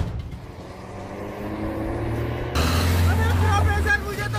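Renault Duster SUV's engine accelerating as the car pulls away, its pitch rising, then a sudden louder rush about two and a half seconds in.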